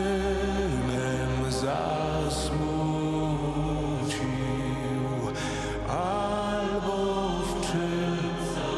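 Choir singing a slow passion hymn in long held notes over a low sustained accompaniment.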